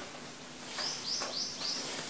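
A small bird chirping: four short, high chirps in quick succession, starting a little under a second in.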